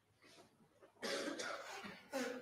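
A person coughing: a loud, harsh cough in two quick bursts starting about halfway through.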